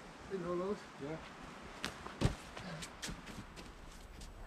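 A short wordless voice sound from a climbing effort, then a run of scuffs and knocks of hands and shoes working on the rock, the loudest a single heavy thump a little after two seconds in.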